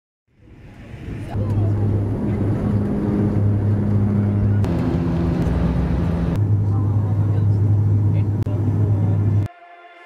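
Steady drone of an airliner's engines with a strong low hum, in three clips joined by sudden cuts. It stops abruptly near the end, where quieter music begins.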